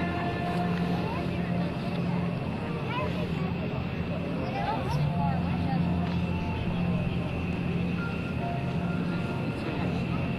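Steady low engine drone with faint, distant voices over it.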